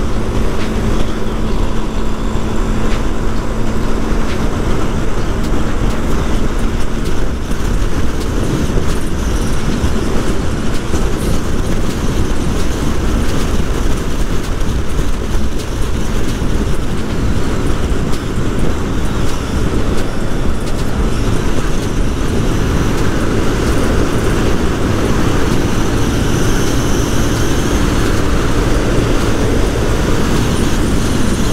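Yamaha motorcycle cruising at a steady highway speed of about 100 km/h, heard from the rider's position: the engine running at constant throttle under a loud, steady rush of wind and road noise.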